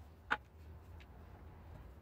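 A revolver being picked up and handled: one sharp click about a third of a second in, then a fainter tick, over a low steady hum.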